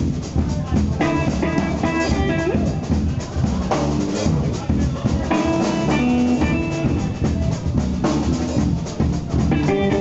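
Live band playing an instrumental stretch of a song: an electric guitar plays phrases of held notes over a drum kit keeping the beat.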